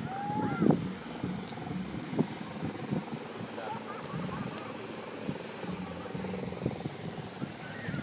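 Outdoor beach ambience: wind rumbling and buffeting on the microphone, with distant people's voices, one louder call near the start.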